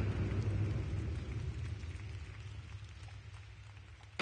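Staged explosion sound effect over an arena sound system: the tail of a boom, a low rumble with crackle slowly dying away toward the end.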